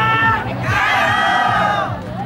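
A group of voices shouting together, first a short shout and then a long held one lasting over a second, over the steady beat of the lion-dance drum.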